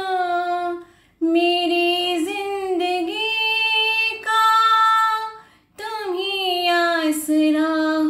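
A woman singing a Hindi film song solo, with no accompaniment, in long held notes with a light vibrato. She breaks off briefly twice between phrases, about a second in and again near six seconds.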